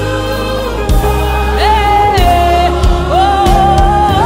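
Live gospel worship music: a woman singing long held notes over a band, with a steady low bass and drum hits.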